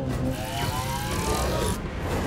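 A hearse's engine revs hard as the car accelerates across the grass, over a steady low rumble. Its pitch climbs steadily for about a second.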